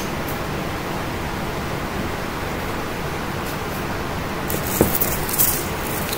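Steady hiss of room noise. About four and a half seconds in, a second or so of crinkly rustling and light clicks comes in as a sheet of sticker labels is handled.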